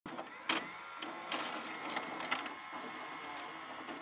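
Hissing static with scattered crackling clicks, the loudest about half a second in, over a faint steady tone.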